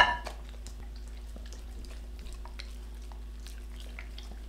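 Faint small clicks and wet mouth sounds of two dogs eating rice and dal from a hand and a small plate, over a steady low hum.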